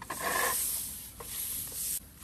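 Twig brooms sweeping dried rice grain across concrete, with a flat grain pusher scraping the surface: two swells of scratchy brushing, the first louder, and a single small click between them.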